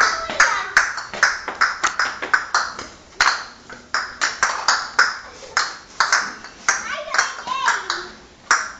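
Pigs at the metal bars of a pen: a rapid, uneven run of sharp metallic clanks and knocks, about two to three a second, with a short pitched call near the start and another near the end.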